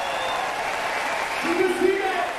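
Audience applauding after a live band's song, with a voice calling out loudly near the end.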